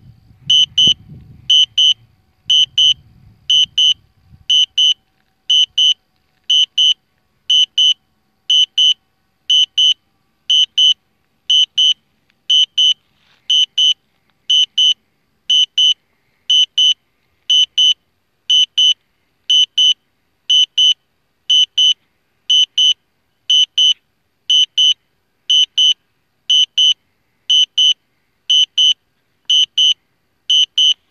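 Drone remote controller sounding its warning alarm: a high double beep about once a second, repeating steadily. A faint low rumble sits under the first few seconds.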